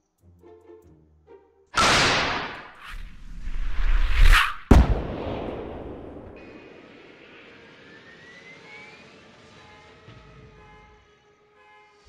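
Rocket launcher sound effects: a sudden loud launch blast about two seconds in, a swelling whoosh, then a sharp bang just under five seconds in that fades slowly over several seconds. Soft string music plays before the blast and returns faintly near the end.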